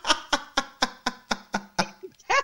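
Two people laughing, in quick even bursts of about four a second.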